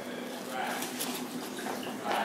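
Soy milk being poured into a marked measuring container up to a fill line, a steady liquid pour.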